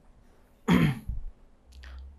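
A person clearing their throat once: a single short, harsh burst about two-thirds of a second in.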